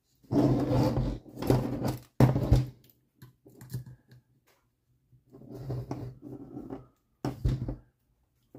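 Handling noise from an RC buggy chassis being shifted and lifted off a paper-covered workbench and turned on its side: irregular rustling and scraping in two stretches, with a sharp knock near the end.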